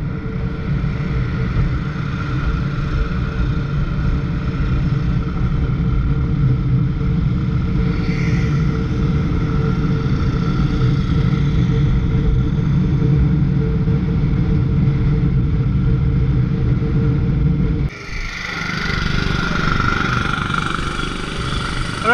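Motorcycle engine running steadily at cruising speed, a constant rumble. About eighteen seconds in the sound drops out briefly and gives way to slower riding in town traffic.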